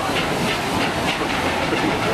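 Narrow-gauge steam train passing close by on a timber trestle bridge: a steady hiss with a regular beat about three times a second as its carriages roll past.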